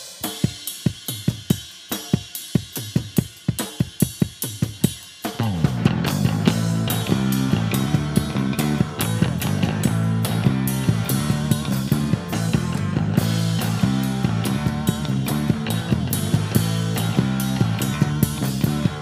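Live band starting a song with the drum kit playing alone, a rhythmic pattern of snare, kick and hi-hat. About five seconds in, electric bass and electric guitar come in and the full band plays on together, louder.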